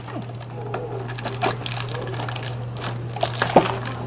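Fingers picking at and tearing open a perforated cardboard door of an advent calendar: a run of small clicks, scratches and paper rustles over a steady low hum.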